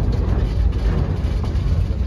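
Low, steady rumble of a narrow-gauge train carriage rolling slowly along the track, heard from an open carriage window.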